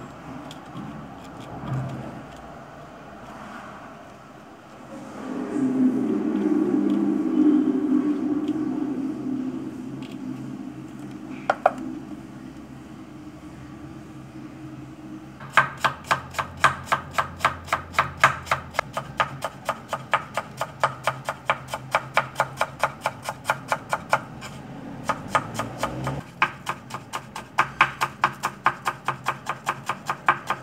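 Chef's knife chopping red onion and then greens on a wooden chopping board: quick, even strikes about four or five a second, starting about halfway through, with a short break about three-quarters of the way in. Before the chopping, a low rumble swells and fades over several seconds.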